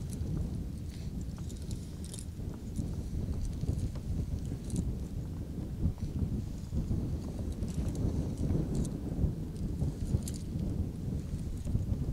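Wind buffeting the camera microphone: a low, uneven rumble, with faint scattered clicks throughout.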